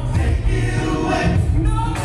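Male gospel quartet singing in harmony into microphones, over loud accompaniment with a heavy bass.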